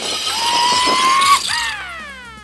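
Zipline trolley running along the overhead cable: a rushing noise with a whine that rises slowly, breaks off about a second and a half in, then falls in pitch.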